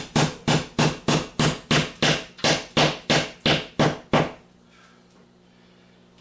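Claw hammer driving nails into a drywall ceiling panel overhead: a steady run of about thirteen sharp blows, roughly three a second. The blows stop about four seconds in, leaving only a faint low hum.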